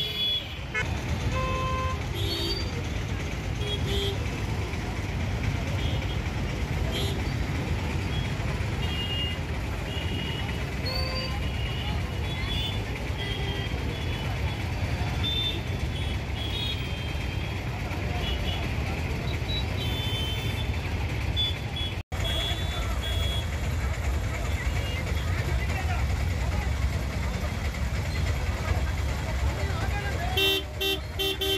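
Road traffic stuck in a jam: a steady rumble of idling and creeping engines from buses, cars and motorbikes, with frequent short horn toots scattered throughout.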